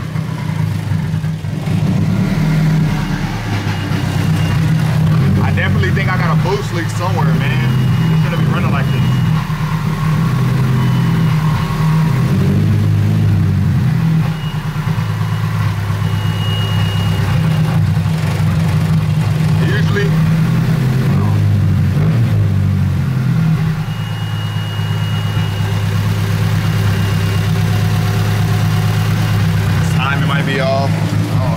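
Nissan 240SX's turbocharged KA24DE 2.4-litre four-cylinder engine idling, its idle stepping up and down in pitch. It runs a little rough while still warming up, which the owner puts down to a misfire and a suspected leak in the exhaust or the intake couplers.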